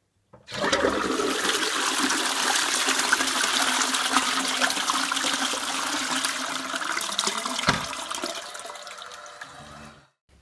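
Push-button toilet flush: water rushes into the bowl about half a second in, runs loudly for several seconds, then fades away. There is one short thud just before it dies down.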